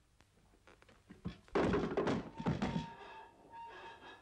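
Wooden thunks and clatter from a handled wooden board, starting about a second and a half in. A steady held musical note sets in underneath and carries on to the end.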